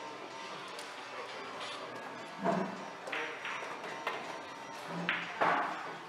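Pool balls clacking: the cue tip striking the cue ball, then balls colliding and hitting the rails, heard as several sharp clicks through the middle and latter part, over quiet background music.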